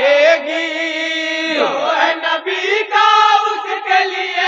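A group of men chanting a naat together in unison through a microphone and PA, holding long drawn-out notes that slide in pitch.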